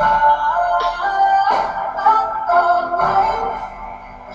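A song playing, with a singing voice over sustained melodic notes, getting quieter near the end.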